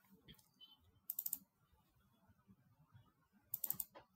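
Two short bursts of computer clicking, about four quick clicks each, the first about a second in and the second near the end.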